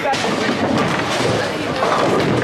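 A bowling ball delivered onto the lane near the end and starting to roll, over the steady noise of a busy bowling alley.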